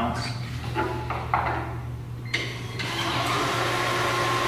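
MBM Aerocut G2 finisher humming steadily, with a few brief rustles of the paper sheet being handled; a little past two seconds in its air feed comes on with a sudden, steady rushing whir that keeps running.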